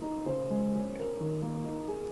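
Yamaha portable digital keyboard playing held chords with both hands, moving to a new chord about a second in.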